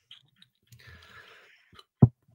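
Near silence in a small room, with a faint breath about halfway through and a few small clicks.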